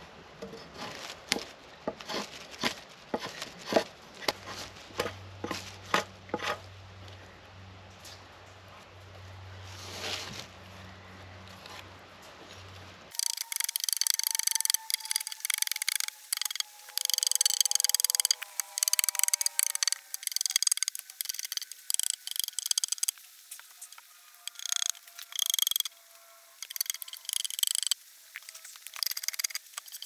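Drawknife shaving bark and wood off a cedar log: a run of short scraping strokes, about two a second. About 13 seconds in the sound changes to sharper, brighter, quicker strokes of a blade working the log.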